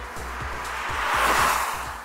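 Background music under a hiss that swells to a peak about a second and a half in and then fades: the Mercedes-Benz GLC 300d Coupe's tyre and wind noise as it drives past.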